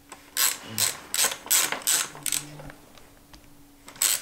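Ratchet wrench clicking in a run of short strokes, about three a second, as a T55 bit turns a mountain bike's rear thru-axle. It stops about two and a half seconds in.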